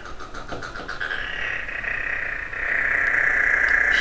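A steady, high-pitched trilling call from a small creature in the room, getting louder from about a second in.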